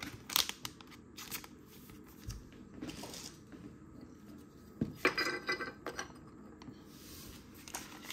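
Hands handling trading cards and their plastic sleeves and packaging: scattered light crinkles and small clicks, with a brief louder rustle about five seconds in.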